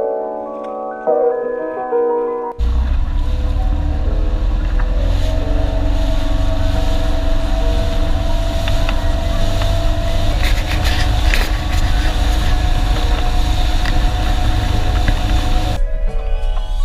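Background music with mallet-like tones for about the first two and a half seconds, then a sudden cut to a motorboat running at speed: a loud, steady engine rumble mixed with wind buffeting the microphone and the rush of water. The music comes back right at the end.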